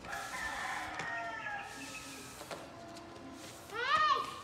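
A rooster crowing once, a long wavering call lasting nearly two seconds. Near the end comes a shorter, louder cry that sweeps sharply up in pitch.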